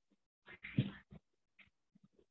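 A domestic animal's short calls, one longer call about half a second in followed by two brief ones, heard through narrow video-call audio.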